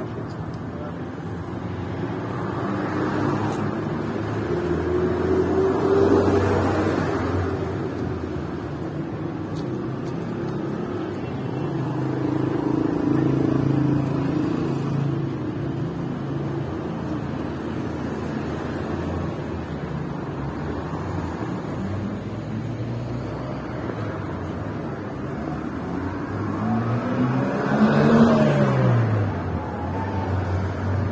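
Road traffic on a city street: cars driving past with engines running, swelling about six seconds in and again near the end, when one vehicle passes close and its engine pitch rises and then falls.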